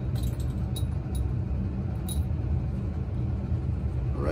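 Steady low background rumble with a few faint light clicks in the first half, as glass test tubes are handled.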